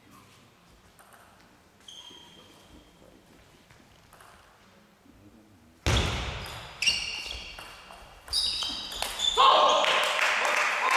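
Table tennis in a sports hall: faint ticks of the celluloid ball at first, then about six seconds in a loud, sudden rally with sharp high squeaks of shoes on the hall floor. Voices shout and cheer rise near the end.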